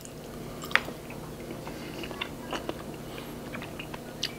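Someone biting and chewing a strawberry Melona frozen milk ice cream bar: quiet, scattered mouth clicks and smacks, with one sharper click under a second in.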